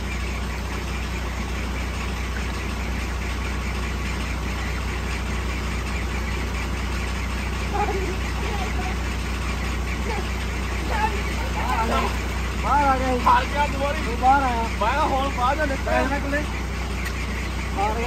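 Water gushing steadily from a pipe into a water tank, over a low steady hum.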